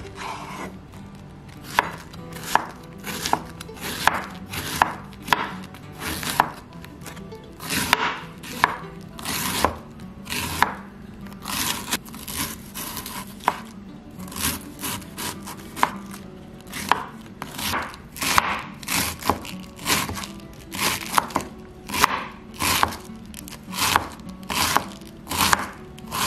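Kitchen knife shredding a cabbage half on a wooden cutting board. A steady run of slicing cuts, about one and a half a second, each ending in a sharp tap of the blade on the board, starting about two seconds in.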